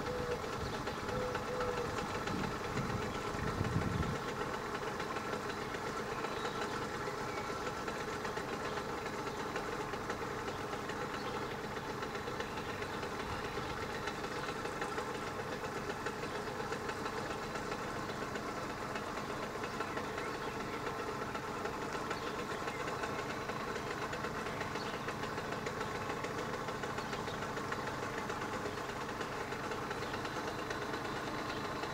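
AŽD 71 level-crossing warning bell, a classic electric bell, ringing continuously with rapid strokes while the crossing is closed. A low rumble from a passing train dies away about four seconds in.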